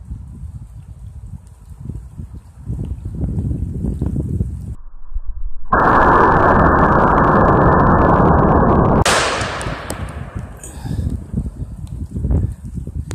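Short-barrelled .500 S&W Magnum revolver firing a 350-grain hollow-point round. The muzzle blast overloads the recording into about three seconds of harsh, flat distorted noise. That ends about nine seconds in with a sharp crack that dies away in an echo.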